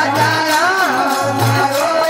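Rajasthani women's devotional bhajan: women's voices singing a wavering melody over harmonium, with a steady fast jingling beat of hand percussion and a low drum stroke about every second.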